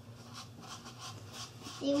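Faint scraping of a paintbrush stirring paint into vinegar in a foam cup, a few soft strokes over a low steady hum. A voice starts near the end.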